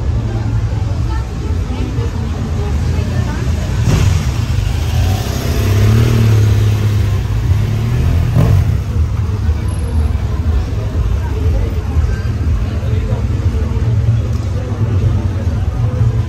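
Busy night-street ambience: people talking and a motor vehicle engine running close by, swelling loudest around the middle, over a steady low bass throb.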